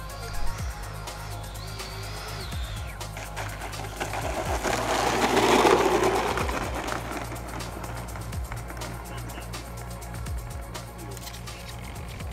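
Background music over the twin electric ducted fans of a Freewing F-14 Tomcat model jet on landing: a faint high whine early on, then a rushing fan sound that swells and fades over a few seconds as the jet comes down and rolls out.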